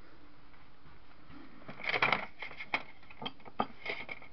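Rummaging through belongings by hand: a run of rustles, scrapes and light knocks as a cardboard box and the things around it are handled, starting a little under two seconds in and loudest just after.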